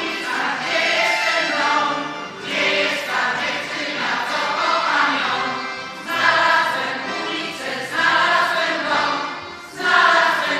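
Polish folk ensemble singing together as a choir, mostly women's voices with one man's, in short sung phrases.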